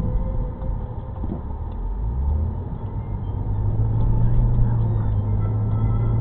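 Car driving, heard from inside the cabin: low road and engine rumble, with a strong, steady low hum coming in about three seconds in and holding.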